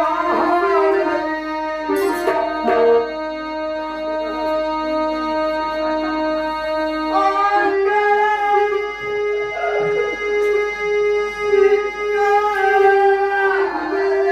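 Live stage-band music: a melody played in long, steady held notes that step from one pitch to another, with a short burst of strokes about two seconds in.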